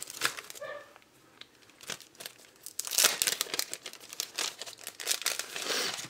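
Clear plastic sticker packaging and paper sheets being handled, crinkling and rustling in irregular bursts that are densest in the second half.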